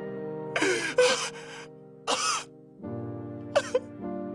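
Sad background music with sustained chords while a cartoon character sobs over it in short, broken bursts: about a second in, again around two seconds, and briefly near the end.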